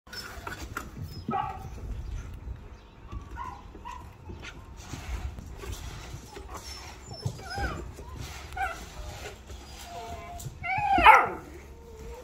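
Several puppies whining and yelping for food, in short bending cries scattered throughout. The loudest is a longer yelp about eleven seconds in. Light clicks and clinks come in between.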